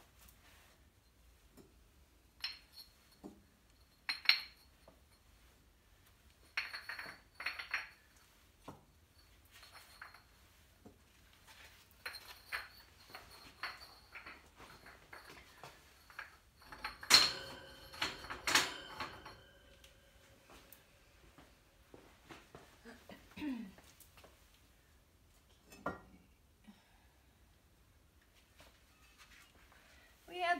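Fired glazed ceramic pieces and kiln shelves clinking and knocking as they are lifted out of the kiln and set down on a table. Scattered single clinks, with a louder run of ringing clinks about seventeen to nineteen seconds in.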